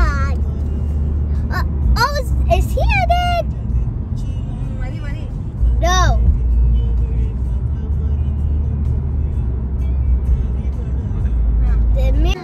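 Steady low rumble of road noise inside a moving car's cabin, a little louder about halfway through. Short high-pitched voice sounds come over it in the first few seconds and again about six seconds in.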